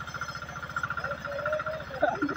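Small engine of a wheat-cutting machine running steadily, with a fast, even pulse of roughly fifteen beats a second.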